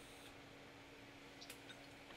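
Near silence: a faint steady hum, with a couple of small clicks about one and a half seconds in.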